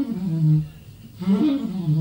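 Tenor saxophone playing slow phrases in its low register: a line slides down to a held low note, drops away about half a second in, and a new falling phrase starts just after a second in.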